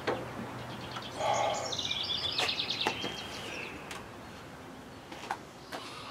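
A songbird singing a quick run of high chirps from about a second in until about three seconds, with a few light clicks scattered through.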